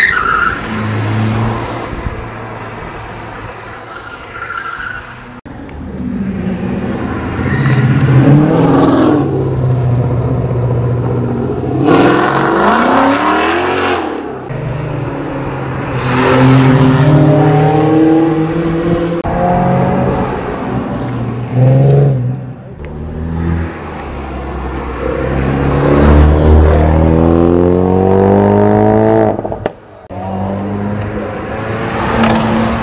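Several cars driving hard past one after another, each engine rising in pitch as it accelerates and then falling away. The last one climbs steadily for a few seconds near the end before the sound drops off sharply.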